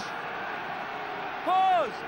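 Steady stadium crowd noise. About a second and a half in comes one loud shouted call, rising then falling in pitch: the referee's scrum engagement call.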